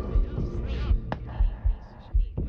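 Low throbbing pulses, about two a second, over a steady hum, like a slow heartbeat in a film's sound design. A single sharp click comes about a second in.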